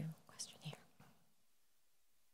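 The end of a man's spoken "thank you", then a brief, faint whispered-sounding voice, then near silence from about a second in.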